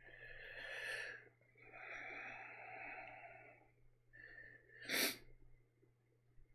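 A man's heavy breathing: a breath drawn in, then a long breath out, and about five seconds in a short, sharp burst of breath through the nose and mouth.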